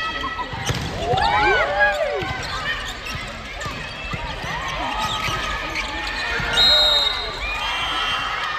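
Indoor volleyball play on a wooden gym floor: players' shoes squeaking, players calling out and the ball being struck. About two-thirds of the way in, a short, loud, steady high whistle blast sounds.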